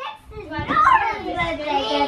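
Young children's voices chattering and calling out at play, with no clear words.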